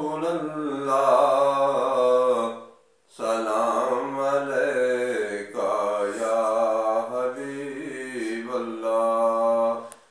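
A man's voice singing a naat, a devotional poem in praise of the Prophet, in long, drawn-out melodic phrases, with a short breath pause about three seconds in.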